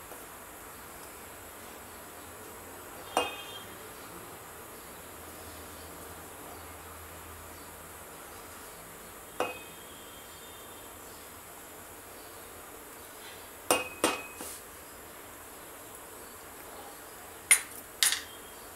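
A wooden spatula knocking against a metal cooking pot five times, each a short sharp knock, some leaving a brief metallic ring: about three seconds in, near nine seconds, twice close together around fourteen seconds, and near the end. A faint steady hiss runs underneath.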